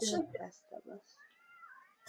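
A domestic cat meows faintly, a drawn-out call that rises and falls in pitch, after the tail of a spoken word.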